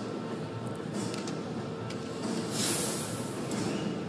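Steady hockey-arena crowd noise from the broadcast. About two and a half seconds in, a hissing whoosh swells and fades with the broadcast's graphic wipe transition.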